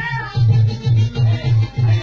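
Dance music with a fast, heavy bass beat.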